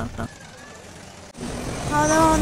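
Low, indistinct background noise of a crowded indoor food court, with no clear single source. It jumps louder at an abrupt cut a little past the middle.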